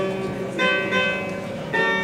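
Solo Persian long-necked lute, plucked in a slow phrase. A new note sounds about half a second in and another near the end, each ringing on and fading over a steady low drone.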